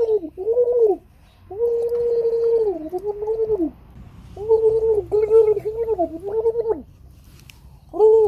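A child's voice making a steady-pitched, gargly 'bu-bu-bu' sound effect in held runs, broken by a few short pauses.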